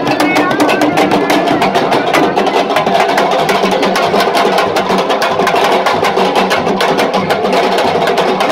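Sabar drums played fast and without a break, sharp stick-and-hand strokes in a dense rhythm, with crowd voices beneath.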